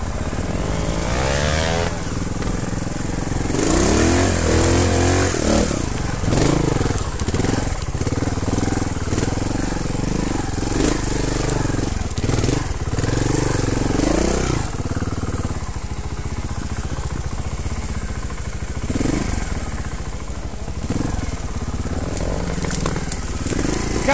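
Trials motorcycle engine revving up and down in repeated bursts as the bike is ridden over rough woodland trail, then running more quietly over the last part.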